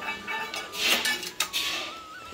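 Steel plates and a small steel bowl clinking and scraping as they are handled, with two sharp clinks about a second in and shortly after. A background song plays underneath.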